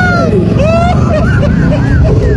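Men's voices talking and exclaiming with sliding pitch, over a steady low rumble.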